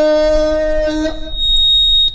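A man's voice holding one long, steady sung note through a microphone and PA, breaking off about halfway in. A thin, high, steady whistle of microphone feedback follows for about a second.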